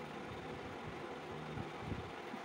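Steady low background hum, with a few soft low knocks near the end as a small plastic primer tube is uncapped and handled.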